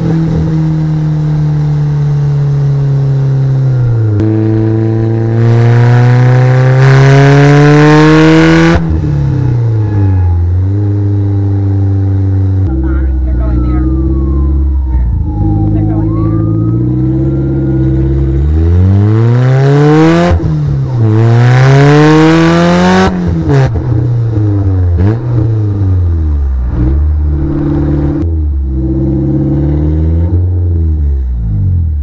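Polaris Slingshot's four-cylinder engine pulling through the gears: the revs climb and drop sharply at each upshift, settle low and steady for a few seconds about halfway through, then climb through the gears again.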